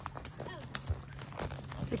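Horses walking on a leaf-covered woodland dirt trail: irregular soft hoof knocks and thuds.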